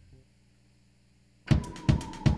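A faint low synth note dies away into near quiet. Then, about one and a half seconds in, a loud drum beat kicks in with heavy hits, over a synth tone that slides slowly down in pitch.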